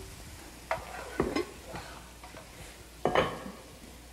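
Spatula stirring and scraping food in a frying pan, with a few short scrapes and knocks over a faint steady hiss.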